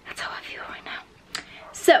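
A woman whispering, breathy and unvoiced for about a second, then a short click, and a spoken 'so' just before the end.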